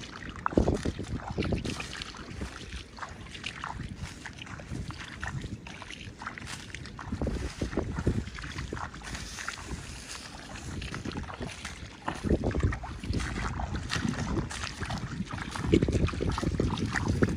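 Footsteps wading through shallow water and mud among rice stubble: an irregular run of splashes and sloshes as each foot is pulled out and set down.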